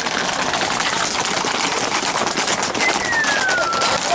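Hooves of a galloping herd of Camargue horses and bulls clattering on a tarmac road, a dense, unbroken patter. Near the end comes a single falling whistle.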